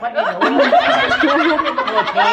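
Several adults laughing together with talk mixed in, breaking out loudly right at the start.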